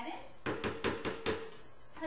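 Five or six quick, light taps of a utensil against a glass blender jar as sea salt is knocked into it.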